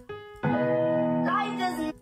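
Software piano playing a single held note, then a sustained chord about half a second in, as chord notes are auditioned in the piano roll. The chord is being worked out by ear in G-sharp minor / B major.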